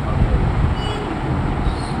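Steady low rumbling background noise with a hiss over it, like distant traffic.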